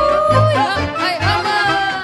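Lively Romanian folk dance tune, a bătuta, played at full level: an ornamented lead melody with quick slides and trills over a steady bass beat.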